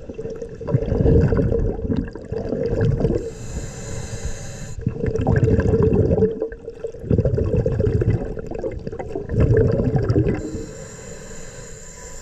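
Diver's breathing regulator heard underwater: bursts of exhaled bubbles gurgling out, with a steady hiss of an inhaled breath about three seconds in and again near the end.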